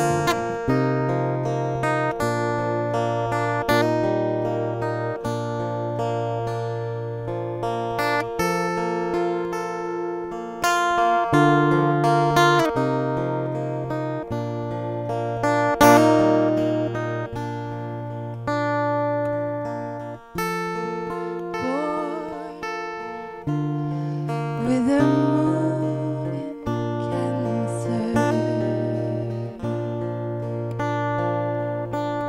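Steel-string acoustic-electric guitar playing a song's accompaniment, with chords strummed and picked over a repeating bass note. A woman's voice starts singing over it about twenty seconds in.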